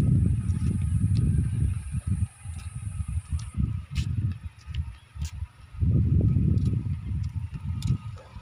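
Wind buffeting a phone's microphone: a loud, gusty low rumble that eases and turns choppy around the middle, then picks up again near the end.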